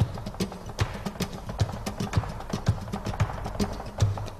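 Flamenco zapateado: a dancer's hard-soled flamenco shoes striking the stage floor in a fast, uneven run of sharp strikes, several a second, with louder accented stamps among them.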